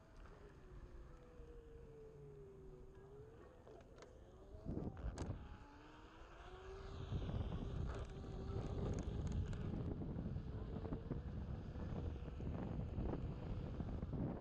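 Onewheel V1 hub motor whining, a single tone that dips and rises with the board's speed, over the rumble of its Hoosier go-kart tyre rolling on pavement and wind on the microphone. A couple of sharp knocks come about five seconds in, and the rumble grows much louder about halfway through.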